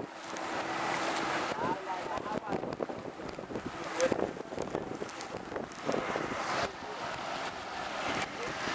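Wind buffeting the microphone and water rushing past the hull of a motor boat under way, with scattered voices.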